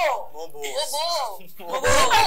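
A group's voices in conversation: short exclamations and chatter, with no clear words.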